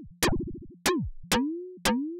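FM synth patch in Ableton's Operator playing four short, plucky notes about twice a second, each starting with a click, its pitch swept up and down by the LFO. One operator is left out of the LFO's pitch modulation, so its pitch stays still while the others move, giving a weird texture.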